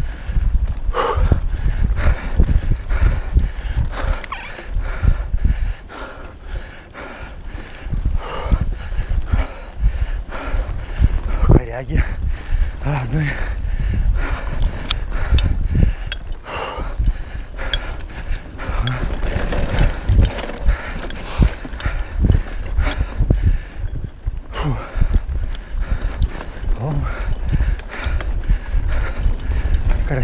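Mountain bike riding over a bumpy dirt trail: a continuous rattle and knocking of the bike with tyre noise, under a steady low rumble of wind on the camera microphone.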